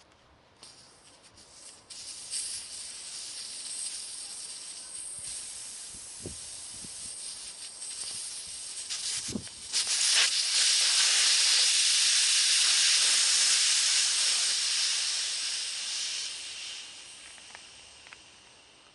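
Air hissing out of a Vespa PX's rear tyre through the valve as the tyre is let down. The hiss starts thin, grows to a loud steady rush about ten seconds in, then fades away near the end as the pressure drops.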